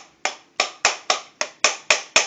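A rapid, even series of sharp knocks or claps, about four a second, each dying away quickly.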